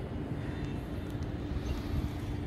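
Steady low rumble of outdoor city background noise with a steady hum running through it.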